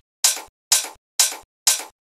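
Electronic hi-hat sample playing on its own in a tech house beat: four evenly spaced hits about half a second apart, each a short high hiss that fades quickly.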